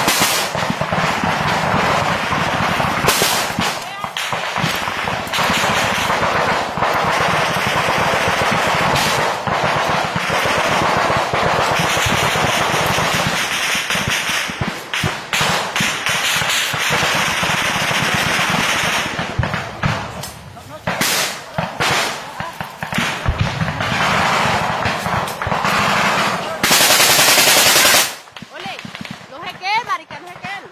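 Automatic gunfire in a firefight: rapid, dense volleys of shots with voices shouting among them, and one very loud sustained burst near the end before it drops off.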